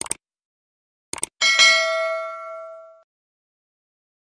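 Subscribe-button sound effect: a mouse click, a quick double click about a second later, then a single bright bell ding that rings out and fades over about a second and a half.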